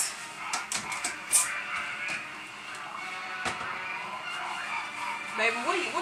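Background television audio, music with voices, at a moderate level, with a few light clicks and knocks of kitchen handling.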